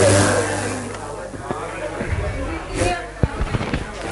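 Indistinct voices fading out over a steady low electrical hum, with a few sharp knocks near the end.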